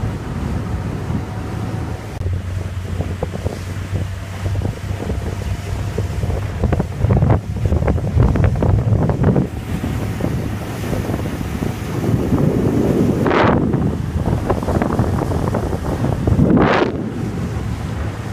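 Motorboat under way over choppy sea: a steady low engine drone under wind buffeting the microphone, with water rushing and slapping against the hull. Two louder splashes of spray come near the end.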